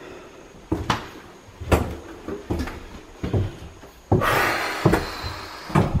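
Footsteps inside a building, a knock about every 0.8 s, then a rustling noise lasting about a second and a half near the end.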